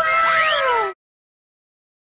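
Short outro sound effect: a falling pitched tone with a thinner whistle gliding upward over it, lasting under a second and cutting off suddenly.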